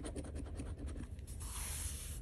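Metal coin scraping the scratch-off coating from a paper lottery ticket in quick short strokes, then one longer, hissier rub in the last half second.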